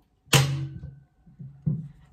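Electric nail gun firing into wood trim twice, about a second and a half apart: each a sharp thunk with a short buzz after it, the first louder.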